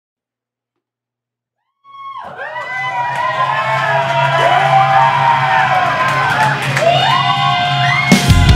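Silence for about two seconds, then a live rock band's intro: many bending, wavering guitar-like tones that rise and fall over a steady low drone.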